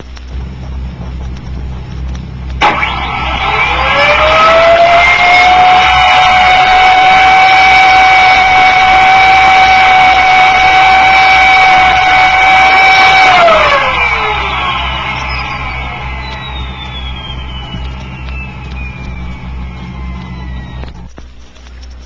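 Turbonique auxiliary-powered turbo supercharger, driven by monopropellant and run on its own with two open carburettors and an unrestricted compressor outlet, so it works at maximum load. About three seconds in it lights with a sharp crack and its whine climbs quickly to a steady high pitch. It holds for about eight seconds, then falls away in a descending whine as it coasts down, over a steady low hum from the old record.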